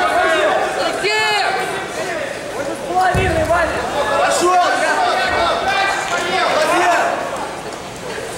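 Men's raised voices calling out without pause, with a short low thud about three seconds in.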